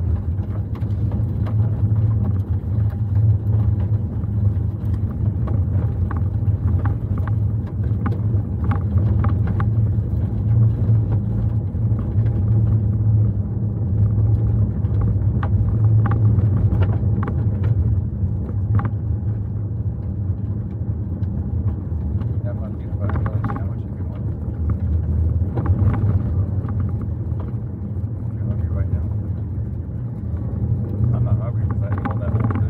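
Car cabin noise while driving: a steady low drone of engine and tyres, with scattered small clicks and knocks over it.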